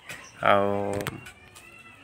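A man's voice: one drawn-out hesitation sound, "aaa", lasting about two-thirds of a second and fading out a little after a second in.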